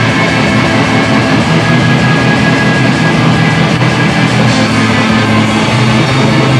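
Black metal band playing live: distorted electric guitars held in a dense, steady wall of sound with bass and drums, no vocals heard.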